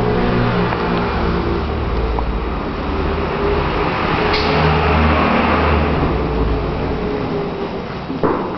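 Motor vehicle engine noise, steady and loud with a deep hum, swelling about halfway through.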